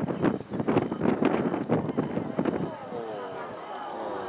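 Aerial fireworks shells bursting in a quick series of bangs, several a second, easing off after about two and a half seconds, with spectators' voices mixed in.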